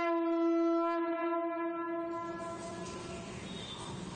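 Conch shell (shankh) blown in one long, steady note that fades out about two seconds in, leaving quieter background noise.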